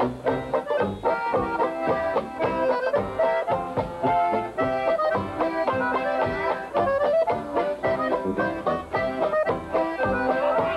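Old-time Dutchman-style polka band playing a dance tune: a squeezebox carries the melody over a tuba bass and a strummed banjo, with a steady beat.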